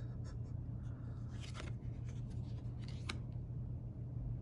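Tarot cards being handled: a card slid off the deck with soft rubbing and rustling of card stock, a small flurry of it about a second and a half in and a sharp click near three seconds, over a steady low hum.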